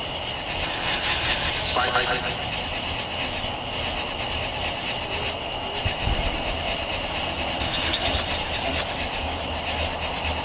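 A phone spirit-box app scanning through radio frequencies, putting out a steady hiss of static with a brief voice-like fragment about two seconds in. Under it runs a steady high-pitched chorus of night insects.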